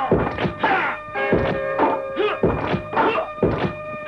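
A rapid run of dubbed kung fu impact thuds and whacks, about two to three a second, as a fighter trains with strikes, over background film music.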